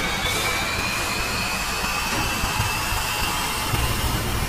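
Cinematic logo-intro sound effect: a steady rushing, jet-like noise with a thin whistling tone slowly rising in pitch.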